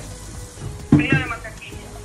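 A brief spoken utterance about a second in, over a low, steady background hum.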